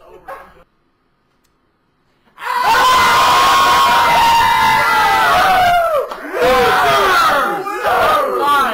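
A small group of people cheering and yelling loudly. It breaks out suddenly about two and a half seconds in, after a second or two of dead silence, with high yells on top.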